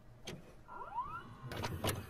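VCR tape mechanism working as a cassette starts to play: a few mechanical clicks and clunks, with a short rising motor whine about a second in.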